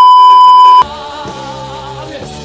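Loud, steady test-tone beep of the kind played with TV colour bars, cutting off suddenly a little under a second in. Live rock music follows.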